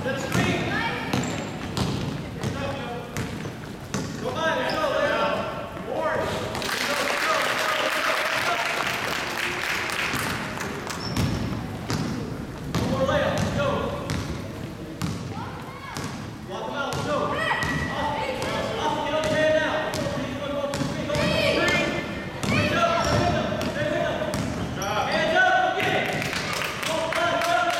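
A basketball being dribbled and bouncing on a gym's hardwood floor during a youth game, short sharp knocks scattered throughout, under the shouting voices of players and spectators. A burst of dense crowd noise comes about seven seconds in and lasts a few seconds.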